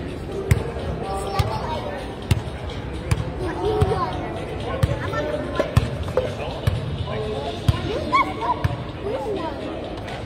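A basketball bouncing on a hardwood gym floor, a sharp thud roughly once a second, over background voices.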